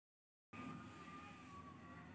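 Near silence: faint room noise with a thin, steady high tone that drifts slightly lower, starting about half a second in.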